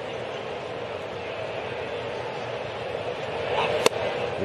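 Steady murmur of a ballpark crowd, then a single sharp crack near the end as the pitch reaches home plate and the batter swings.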